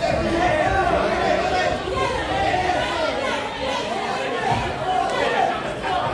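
Crowd of boxing spectators talking and shouting over one another, many voices at once, in a large echoing hall.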